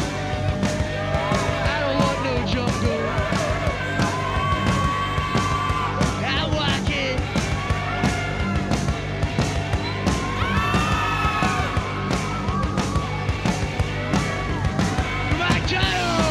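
Punk rock played by a live band: a fast, steady drumbeat under guitar and bass, with a voice singing or shouting over the music.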